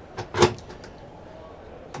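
A short click, then a sharper knock about half a second in, from a motorhome washroom cabinet door being handled, with a faint tick near the end over low steady background noise.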